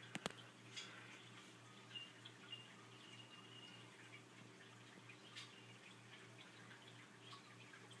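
Near silence: faint room tone with a steady low hum and a few faint clicks, the clearest just after the start.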